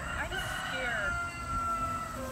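A long, drawn-out call that rises, holds one steady pitch for over a second, then falls away near the end, over steady outdoor background noise.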